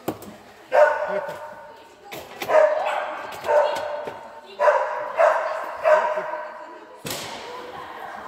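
A dog barking repeatedly while running an agility course: about six sharp barks, roughly a second apart, echoing in a large hall.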